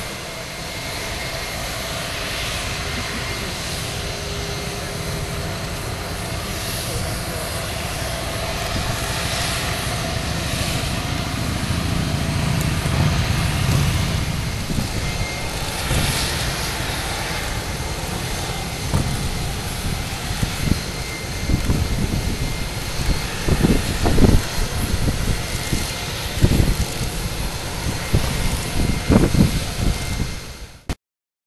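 Steady jet aircraft noise on an airport apron, a continuous rushing hum with a high hiss. In the second half, irregular louder low rumbles come and go over it.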